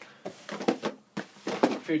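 A run of short knocks and rustles of things being handled and moved close to the microphone. A spoken word comes in near the end.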